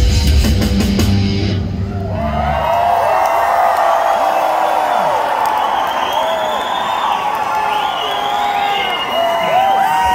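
Live heavy rock band (electric guitar, bass and drums) playing loudly, stopping about two and a half seconds in; then a crowd cheering and screaming, with many high-pitched whoops, to the end.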